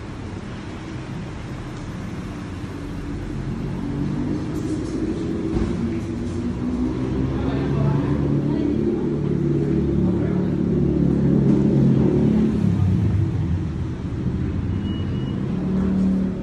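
A car engine running close by, its low rumble growing louder over several seconds and then easing off, with faint voices in the background.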